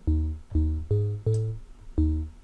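Synth bass patch in Serum playing a tech-house bassline of short, plucky notes, about five in two seconds, shifting in pitch. The patch is a square wave frequency-modulated by a sine oscillator, shaped by a short envelope with no sustain.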